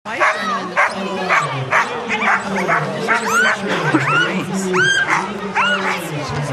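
Harnessed sled dogs barking and yelping, many short, high rising yelps that overlap with barely a pause, the keyed-up din of a team held back at the start line.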